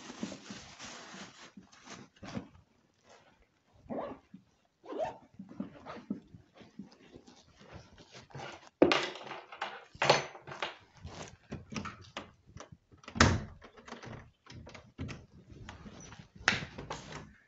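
Scattered short knocks and thumps, sparse at first and coming thicker and louder in the second half, with three strongest hits.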